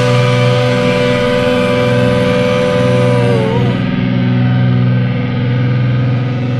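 The rock band's closing distorted electric guitar chord ringing out after the drums have stopped. A high held note wavers and drops away about three and a half seconds in, while the low chord keeps sustaining.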